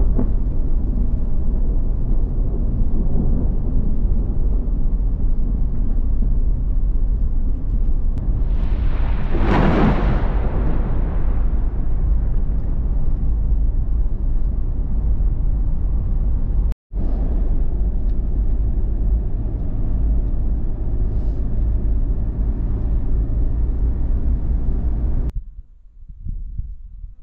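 Steady low rumble of road and engine noise inside a moving vehicle on a highway, with a louder rushing swell that rises and fades about nine to eleven seconds in. The rumble cuts out for a moment a little past the middle.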